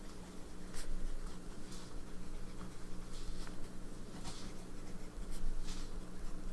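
TWSBI Diamond 580 AL fountain pen with a medium nib, writing in cursive on notebook paper: the nib scratches lightly across the page in short strokes, one word stroke after another.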